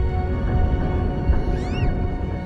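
Ominous film score of held tones over a deep rumble, with a short cry that rises and falls in pitch about one and a half seconds in.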